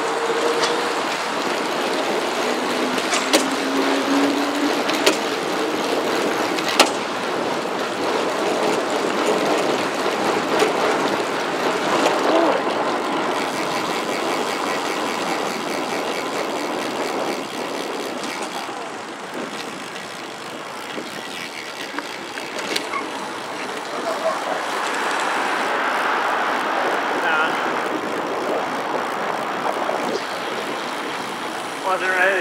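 Wind rushing over a helmet-mounted action camera and road traffic passing on a busy highway while riding a road bike. There is a falling tone in the first few seconds and a few sharp clicks.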